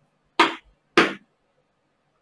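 Two short sharp knocks about half a second apart, from small wooden sticks being handled in the hands.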